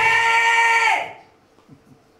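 A man's amplified voice calling out a long, drawn-out "Ludzie!" ("People!"), the vowel held at one steady pitch until it stops about a second in.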